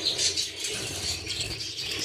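Light clicking and rubbing of handling close to the phone's microphone, with budgerigars chirping in the aviary behind.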